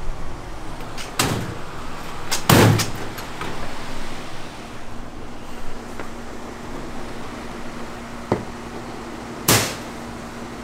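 Four sharp knocks, the loudest about two and a half seconds in, over a steady machine hum.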